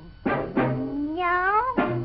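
Cartoon soundtrack: music with one long, rising, meow-like gliding call that starts about half a second in, and a shorter one near the end.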